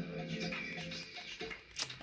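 Soft background music of sustained, steady tones that fade out after about a second and a half, followed by a brief sharp rustle just before the end.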